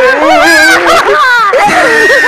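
A person's voice crying out without words: loud, high-pitched wailing and whimpering whose pitch wavers and slides.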